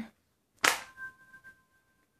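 A single sharp click, about half a second in, as the Samsung Galaxy S4's screen is switched off with a button press, followed by a faint steady two-note hum.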